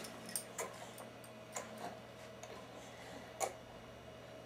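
Babies sucking on feeding bottles: a few soft, irregular clicks and smacks, the loudest late on, over a faint steady hum.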